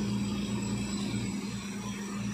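Truck-mounted borewell drilling rig running with a steady low engine hum, as a length of drill pipe is being set in the rig and it is not drilling.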